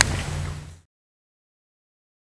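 Brief outdoor background noise with a click at the start, cut off abruptly just under a second in; the rest is dead silence.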